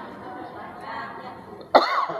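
A man coughs once, sharply, near the end, after a soft murmur of voices.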